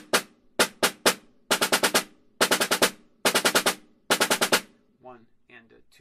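Concert snare drum played with wooden sticks: three single strokes, then four five-stroke rolls, each a quick cluster of double strokes ending on a single tap, about one roll a second.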